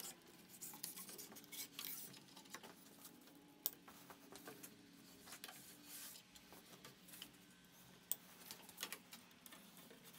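Faint rustling and scraping of nonmetallic Romex cable being pulled through holes drilled in wooden wall studs, with scattered light clicks and taps as the cable drags against the wood.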